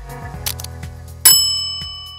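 Outro music with a single bright bell ding a little over a second in, which rings on and slowly fades. It is a notification-bell sound effect for an on-screen subscribe button.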